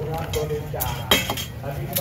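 Metal tongs and kitchen scissors clinking against a stainless steel mixing bowl: a few sharp clinks, the loudest about a second in.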